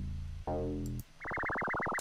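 Software synth presets being auditioned: two low bass notes from the Fruity DX10 FM synth's Square Bass preset, each fading out over about half a second. About a second in, a different synth tone starts, pulsing rapidly, roughly ten times a second.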